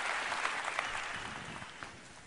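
Audience applauding, dying away.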